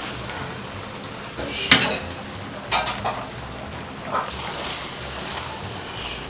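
Sauce sizzling in a wok over a gas flame as a metal ladle turns glazed braised pork, with a few sharp scrapes and clinks of the ladle against the wok, the loudest a little under two seconds in.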